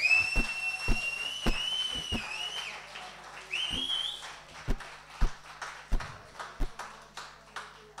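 A person's loud whistle, held for about two and a half seconds, then a second shorter rising whistle, over scattered handclaps from a small audience applauding the end of a song.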